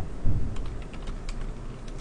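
Typing on a computer keyboard: a run of light keystroke clicks.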